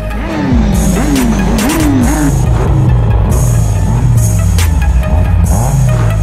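Hip-hop beat with a steady bass line and regular hi-hats. In the first two seconds an engine revs several times in quick succession under the music.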